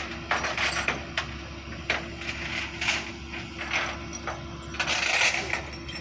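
A flatbed tow truck's engine running steadily, with scattered metallic clicks and clinks from the winch cable and rigging and a short rushing noise about five seconds in.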